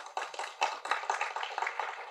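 Audience applauding: many hands clapping in a dense, steady clatter.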